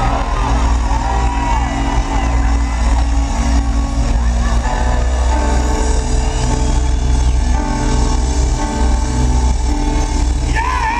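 Live R&B band playing, with heavy bass and held keyboard chords. A singer's voice comes in with short sliding lines near the start and again briefly in the middle.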